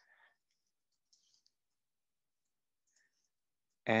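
A few faint, scattered clicks from a computer keyboard and mouse being worked: a cluster near the start, another about a second in, and a last one about three seconds in. A man's voice starts at the very end.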